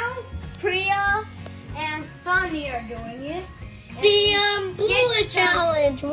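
Children's voices singing wordlessly, in long sliding notes broken by short pauses.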